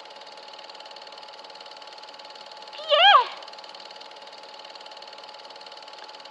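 A steady mechanical whirring hum, with one short vocal exclamation about three seconds in whose pitch rises and then falls.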